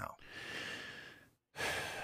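A breath at a close microphone, soft and airy, with a faint steady hiss under it; the sound cuts out to silence for a moment about one and a half seconds in, then another breath follows just before speech.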